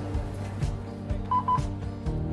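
Bus fare-card reader giving two short electronic beeps in quick succession about a second and a half in, as a card is touched to it, over background music.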